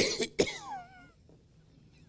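A man coughing hard: one cough right at the start and another about half a second in, trailing into a short whistling breath that falls in pitch.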